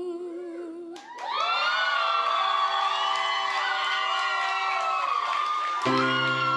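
A held sung note with vibrato fades out in the first second. Then a crowd cheers and screams in many high voices, and the song's musical accompaniment comes back in just before the end.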